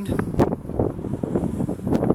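Wind buffeting the microphone in uneven gusts, with a single sharp click about half a second in.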